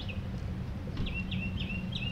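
A bird chirping in a quick run of short, high repeated notes, about three a second, starting halfway through, over a steady low outdoor rumble.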